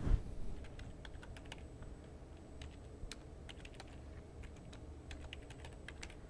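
Computer keyboard being typed on: an uneven run of quick key clicks with short pauses as a short name is keyed in. A low thump right at the start.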